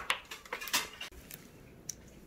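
Fast-food packaging being handled: a few light clicks and paper rustles, busiest in the first second, with a sharp click near the end.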